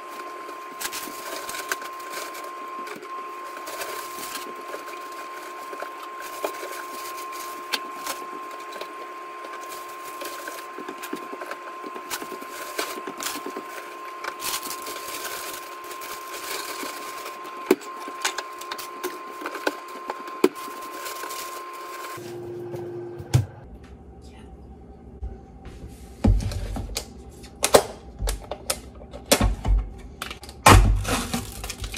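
Groceries being put away: plastic packaging rustling and items clicking and knocking as they go into a freezer, over a steady hum. About three-quarters of the way through the sound changes to closer, louder knocks and thuds of items being handled on the counter.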